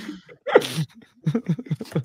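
People laughing: a couple of bursts, then a run of short, rhythmic laughs, about four a second, in the second half.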